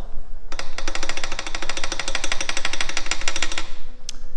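Subaru FB25 flat-four engine running with a heavy, rapid rod knock, about eleven or twelve even knocks a second, starting about half a second in and stopping just before the end. The knock comes from cylinder one, whose rod bearing is worn away through lack of lubrication.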